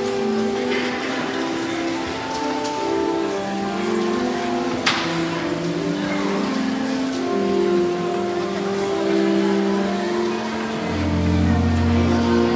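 Pipe organ playing slow, sustained chords over the shuffle and rustle of many people moving about. A sharp knock comes about five seconds in, and deep pedal notes join near the end.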